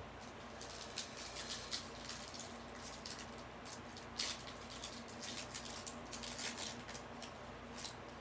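Crinkling and rustling of a foil trading-card pack wrapper and the cards inside as the pack is handled and opened, a string of small irregular crackles over a faint steady room hum.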